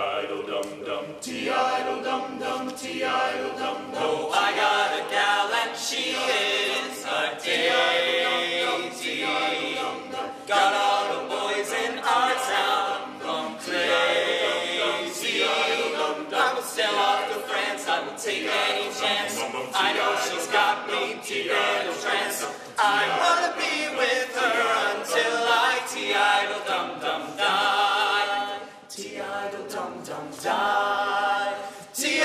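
Male barbershop ensemble singing a cappella in close harmony, several voices together without accompaniment.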